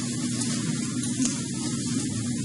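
Steady hiss of background room noise with a faint low hum underneath, and no distinct sound event.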